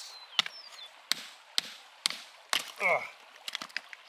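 Steel hammer striking a geode on creek gravel, five sharp blows about half a second apart, then a few small clicks of rock pieces as it breaks open.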